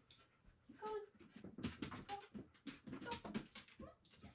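A dog whining in short, high whimpers, the first about a second in and a couple more later, among a run of quick knocks and rustles.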